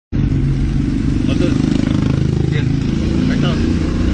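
A vehicle engine running steadily close by, with low, indistinct voices over it.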